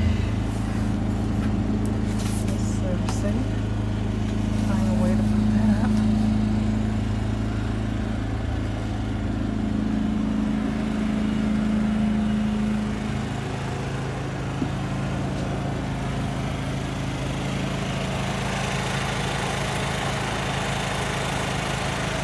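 A steady low machine hum with a couple of level tones, which shift in pitch and level partway through, about ten to thirteen seconds in.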